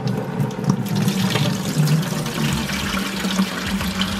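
Saltwater pouring steadily from a torn hole in a plastic fish bag into a plastic bucket, a continuous splashing trickle.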